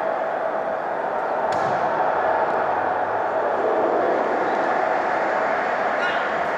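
Steady background noise with a faint hum running through it, and a brief click about one and a half seconds in.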